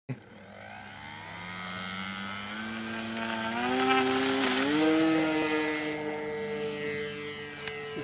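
Radio-controlled Cub model plane on floats throttling up for a water takeoff: its motor and propeller whine rises steadily in pitch and loudness over the first few seconds, then holds a steady note once airborne.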